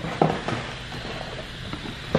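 Handling noise: a couple of short knocks and rustles in the first half second as a box or the camera is moved, over steady room hiss.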